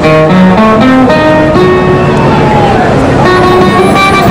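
Live band music led by a nylon-string acoustic guitar picking a stepping single-note melody, with a gliding, falling line through the middle.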